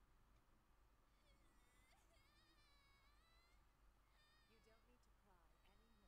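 Near silence: room tone, with very faint, high-pitched wavering sounds barely above it.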